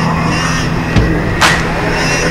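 A snowmobile engine running steadily at speed through deep powder, mixed with the instrumental part of an electronic song.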